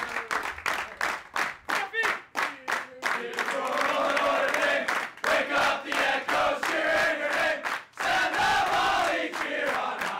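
A team of young men singing together loudly while clapping in a steady rhythm, with a brief break a little before the eighth second.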